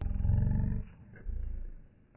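Two deep, rough growls: a longer one at the start and a shorter one about a second later.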